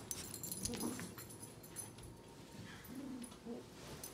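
A few faint, short vocal sounds, about a second in and again near three seconds, amid soft rustling of bedding.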